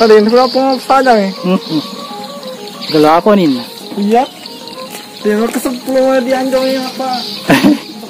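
A voice singing with music, its notes gliding up and down in long phrases, with a faint steady high hiss underneath.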